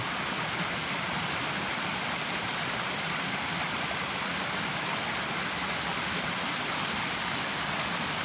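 A small woodland stream rushing over rocks, a steady, even rush of water.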